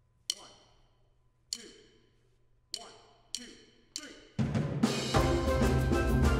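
A count-in of five sharp clicks, three slow and then two twice as fast. Then, about four seconds in, a steel band of steel pans with drum kit starts a calypso, dense and rhythmic with low bass-pan notes.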